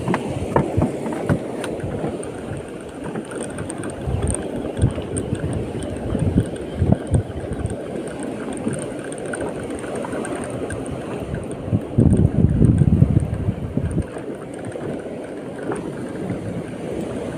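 Wind buffeting the phone's microphone over the wash of choppy sea water, in uneven gusts with a louder stretch about twelve seconds in.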